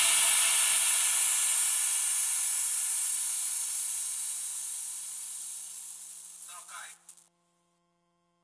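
Closing tail of a drum and bass track: a hissing noise wash that fades slowly over about seven seconds. A brief flutter comes just before it cuts off.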